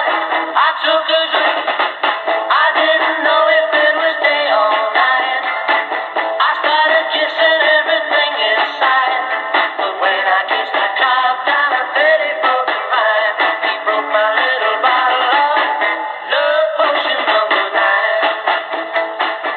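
A song with a singer playing over AM radio through the small speaker of a Tecsun 2P3 kit radio. The sound is thin and narrow, with no bass and no top end.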